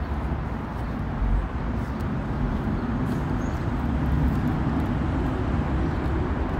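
Steady low outdoor rumble, with faint rustles and light knocks as a full-face motorcycle helmet is pulled on over the head.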